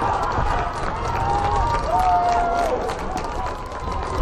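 Players and spectators shouting and calling out across a field hockey pitch, including a few drawn-out shouts, one falling off in pitch near the end. Scattered sharp clicks and a low rumble run underneath.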